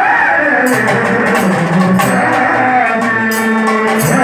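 Live bhajan (Hindu devotional song) music: held melodic tones over a hand drum and repeated bright percussion strikes.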